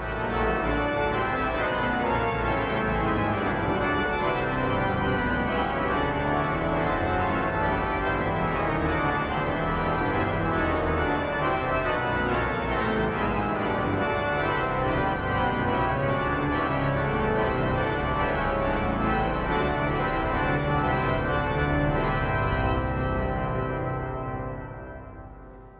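Duke Chapel's 1932 Aeolian pipe organ playing loudly, full and sustained, from deep bass pedal notes up through a dense chordal texture. This is the closing passage of the movement, and the sound begins to die away right at the end.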